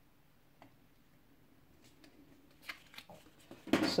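Quiet room tone, then from about two and a half seconds in, small clicks and rustles of in-ear earphones and their packaging being handled, loudest near the end.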